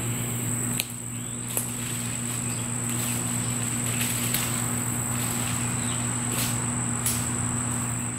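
Insects calling in a steady, high-pitched, unbroken drone, with a low steady hum beneath and a few brief crackles.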